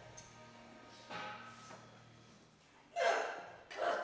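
Mostly quiet gym, then about three seconds in a weightlifter's short, sharp breath as she braces under a loaded barbell held in the front rack.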